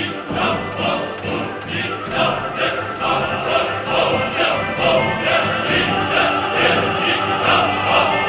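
Live opera: a male chorus singing with the orchestra, the accompaniment beating out short accented chords about three times a second.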